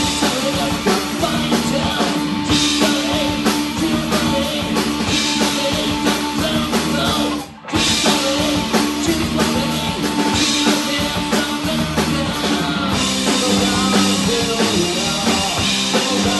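A live grunge-punk rock band playing with distorted electric guitar, bass guitar and drum kit. The whole band stops briefly about seven and a half seconds in, then comes straight back in.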